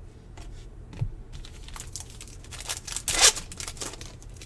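A stack of 2020 Bowman Chrome baseball cards being flipped through and slid against one another in the hand. There is a soft thump about a second in, then a run of quick clicks and scrapes, the loudest card slide a little after three seconds.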